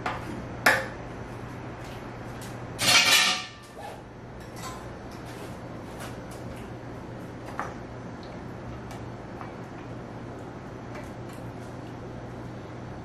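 A metal knife clinking and scraping against the stainless-steel chute and bowl of an electric tomato mill: a sharp clink just under a second in, then a ringing metallic rattle lasting about a second around three seconds in, with a few lighter clicks after. A steady low hum runs underneath.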